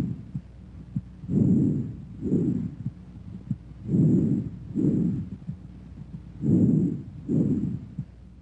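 Bronchovesicular breath sounds heard through a stethoscope: a soft, low rush on each breath in and out, the two about equal in length with a brief gap between them, repeating about every two and a half seconds.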